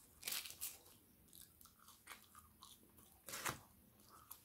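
Close-up eating sounds of a man picking soft steak-cut chips off a foil-and-paper takeaway wrapper and chewing them. The wrapper gives two short crinkling bursts, one just after the start and one near the end, with small mouth clicks in between.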